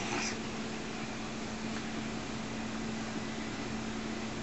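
A 32-pound house cat gives a brief snort right at the start, over a steady low hum.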